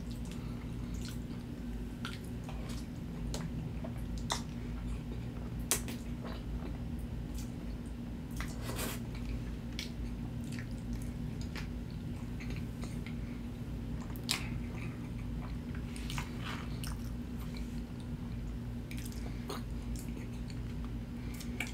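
Close-miked chewing of chicken fettuccine alfredo and garlic bread, with scattered wet mouth clicks over a steady low hum.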